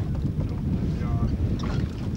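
Wind buffeting the microphone with a heavy, uneven low rumble, with a brief faint voice about a second in.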